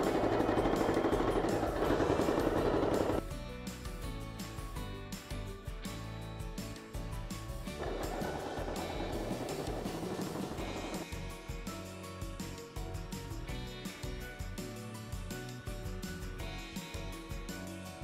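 Sewing machine stitching in two runs, one in the first three seconds and another from about eight to eleven seconds in, over background music.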